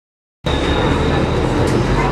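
Silence, then about half a second in the steady rumble and hiss of a moving vehicle heard from inside cuts in suddenly, with a thin high whine over it.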